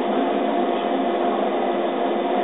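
Laser cutter running while it cuts holes in thin wood strips: a steady whirring machine noise with a few constant humming tones.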